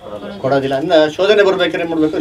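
A man's voice speaking in phrases, continuing the preaching.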